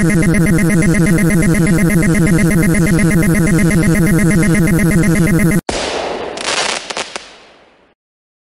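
A loud, rapidly warbling synthesized sound effect with many layered tones, cut off suddenly about five and a half seconds in. A noisy burst with a short laugh follows and fades out over about two seconds.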